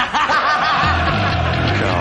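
A man laughing loudly with his head thrown back. About a second in, music with a steady bass beat comes in.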